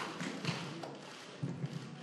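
A few soft taps and thumps over low background noise.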